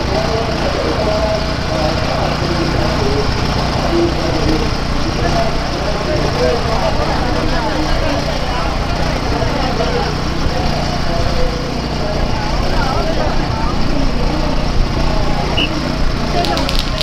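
A small engine running steadily at a low hum, with the talk of a walking crowd over it.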